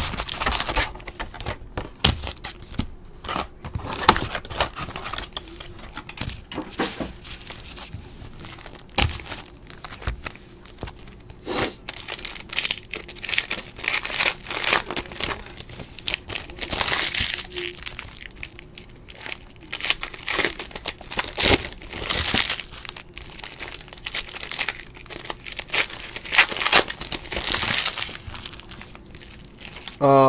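Foil wrappers of Panini NBA Hoops basketball card packs crinkling and tearing as the packs are ripped open and emptied by hand, in irregular bursts one after another.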